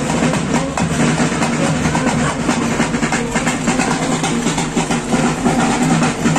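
Procession band's barrel drums beaten in a fast, dense, continuous rhythm.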